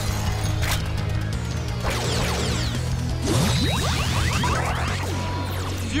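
Armor power-up transformation sound effects over music: a sharp hit at the start, then a steady low drone with many rising and falling electronic sweeps and whooshes.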